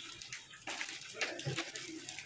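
Soft rustling of saree fabric being handled, with a faint voice in the background.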